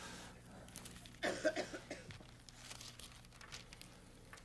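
Faint rustling of thin Bible pages being leafed through by hand while searching for a passage, with a brief throat sound about a second in.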